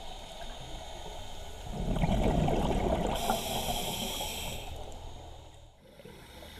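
Scuba diver breathing through a regulator underwater: a gurgling rush of exhaled bubbles about two seconds in, then the hiss of an inhale through the regulator.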